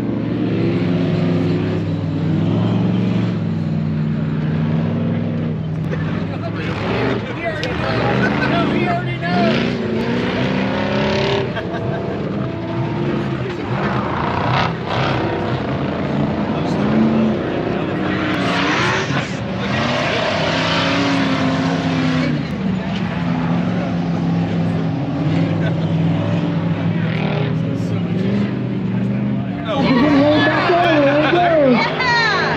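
Off-road race vehicles' engines running on the dirt course, several at once, their pitch rising and falling as they rev and back off.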